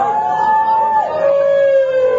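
Electric guitar feedback through the amplifier: one loud, sustained whining tone that steps down to a lower pitch about a second in and holds there.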